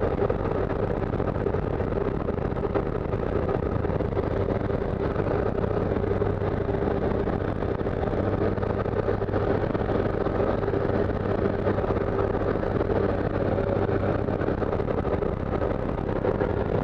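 Jump plane's engine and propeller running steadily at the open door, a constant drone with wind rushing in.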